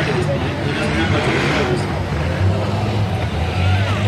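Race cars' engines running on the track as a steady low drone, growing louder about two and a half seconds in, under the chatter of nearby spectators.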